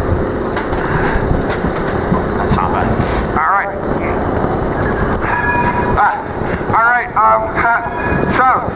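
Outdoor city-square noise with wind on the microphone for the first few seconds. From about halfway a man's voice makes short sliding calls, with a couple of brief held tones among them.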